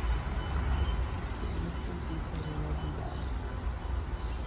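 Low, steady outdoor rumble, with faint voices talking in the background.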